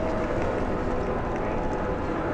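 Steady engine and road noise inside a moving tour coach, with a faint steady hum.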